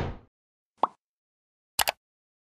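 Short edited-in sound effects: a noisy swell that fades out at the start, a single short pop about a second in, and a quick double click near the end, with dead silence between them.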